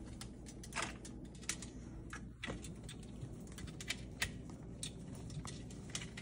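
Faint, irregular clicks and light scrapes of a Moluccan cockatoo's beak and claws gripping a wooden branch perch as it climbs down.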